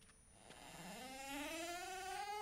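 A cat's long, drawn-out yowl beginning about a quarter of the way in, rising in pitch and growing louder.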